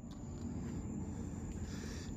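Outdoor ambience: a steady, thin, high insect trill over a low rumble.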